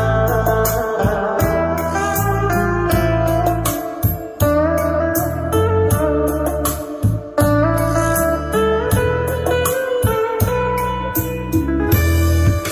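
Guitar-led music playing through a Sony CFD-700 DecaHorn boombox, with a strong, pulsing bass line carried by its rear subwoofer.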